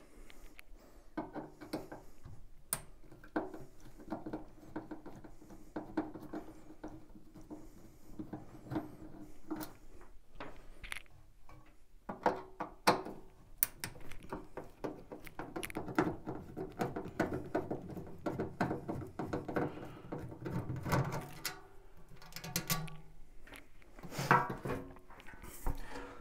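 A screwdriver turning out screws from a gas boiler's sheet-metal casing, heard as many small clicks and ratcheting ticks. Then come metallic knocks and rattles as the sheet-metal combustion-chamber cover is handled and lifted off.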